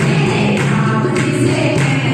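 Women singing a Hindi devotional bhajan together through microphones, with a steady percussive beat about every half second.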